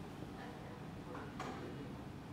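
Quiet room tone with a steady low hum and a few faint, short ticks or taps.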